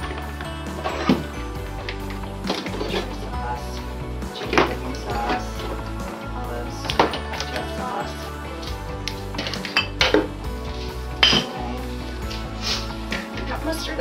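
Condiment bottles and jars knocking and clinking against each other and the plastic refrigerator door shelf as they are lifted out and set back, about a dozen separate knocks with the sharpest about ten and eleven seconds in, over steady background music.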